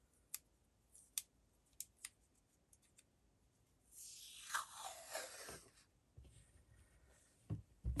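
Tape pulled off a small roll and pressed onto a paper envelope by hand: faint light ticks, then a rasp of tape unrolling lasting about a second and a half about four seconds in, sliding down in pitch. A couple of soft knocks follow near the end.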